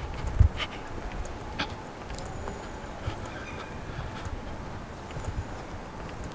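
Footsteps on outdoor paving, irregular low thumps with a few faint clicks, over steady outdoor background noise.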